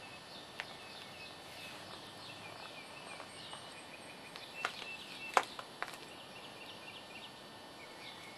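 Birds chirping faintly in the background, short high notes repeated over and over, with a few sharp clicks, one early and three close together around the middle.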